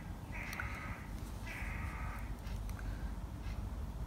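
A bird's harsh, drawn-out caws: two in a row, about a second apart, over a steady low background rumble.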